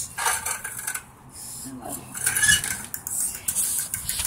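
Light clinks and rattles, with a few sharp clicks scattered through.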